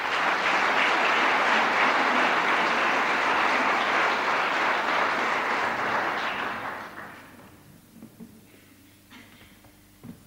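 Concert-hall audience applauding, dying away about seven seconds in, followed by quiet with a few faint clicks.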